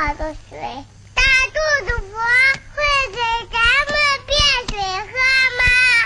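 Children singing a song in short melodic phrases, high voices holding and sliding between notes.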